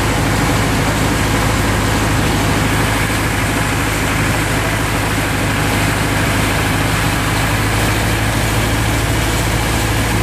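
Boat's engine running steadily at cruising speed as a constant low hum, with the rush of water and spray along the hull.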